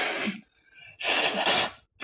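A woman blowing her nose hard into a tissue, two short blasts about a second apart.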